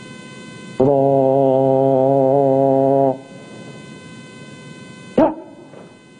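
A military drill command shouted across the parade ground: one long held syllable of about two seconds, then, about two seconds later, a short, sharp word falling in pitch. A faint steady hum lies under it.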